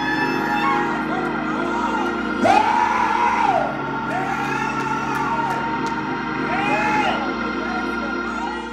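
Church worship music of sustained held chords, with voices crying out over it in several long, arching calls and light tambourine jingles.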